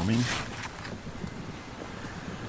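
Wind rumbling on the camera microphone, with squash leaves rustling as a hand brushes through them.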